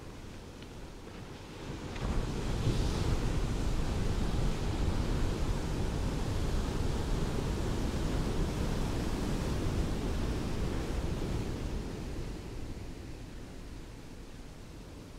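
Ocean surf on a sandy beach: a wave breaks about two seconds in and its rushing wash runs on for about ten seconds before easing off near the end.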